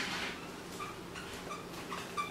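Dry-erase marker squeaking on a whiteboard in a run of short strokes, with a sharp tap at the start as it meets the board.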